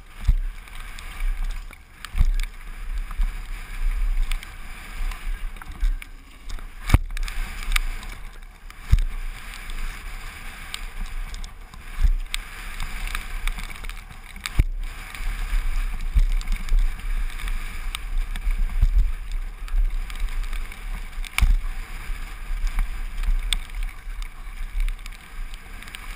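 Mountain bike running fast down a rough dirt trail: tyres on loose dirt, the bike and its parts rattling, with frequent sharp knocks from bumps. Wind buffets the microphone throughout as a low rumble.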